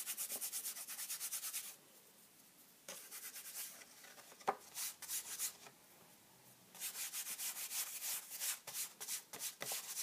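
Fingers rubbing briskly back and forth over a paper card to brush loose gilding flakes off it, in quick strokes. The strokes come in three runs with short pauses between them, and there is a single sharp tap about four and a half seconds in.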